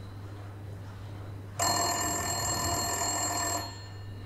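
A telephone ringing: one ring of about two seconds that starts and stops abruptly, over a steady low hum.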